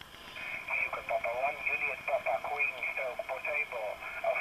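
A distant amateur station's voice received on 10-metre single sideband and played through the Elecraft KX3 transceiver's speaker. It sounds thin and narrow-band, with a steady high-pitched hiss running under it.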